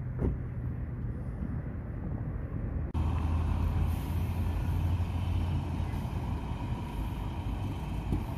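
Road vehicle engine noise. About three seconds in, the sound cuts to a louder, steady low engine hum.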